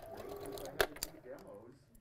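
Electric sewing machine stitching a quarter-inch seam through quilt fabric pieces, with a sharp click about 0.8 s in and a softer one just after.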